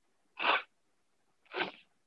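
A man clearing his nose with a tissue held to his face: two short nasal bursts about a second apart.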